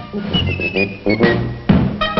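Background music, with a high whistle-like line stepping down in pitch over the first second.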